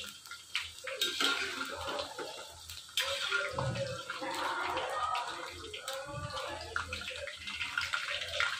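Thin slices of raw banana deep-frying in hot oil in a kadhai, sizzling and bubbling steadily while the slices are still pale. A metal slotted ladle turning the slices knocks against the pan a few times.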